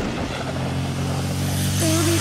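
A vehicle engine with a low, steady rumble, swelling in from a whoosh just before and holding an even pitch.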